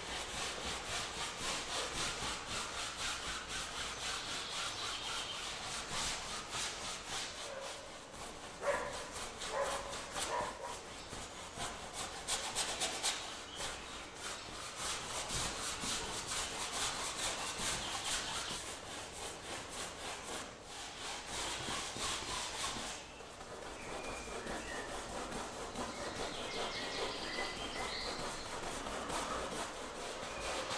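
Bristle paintbrush scrubbing oil paint onto a stretched canvas in rapid back-and-forth strokes, a dry scratchy rubbing that pauses briefly about three-quarters of the way through.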